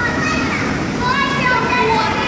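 Young children talking and chattering, high-pitched voices with no clear words.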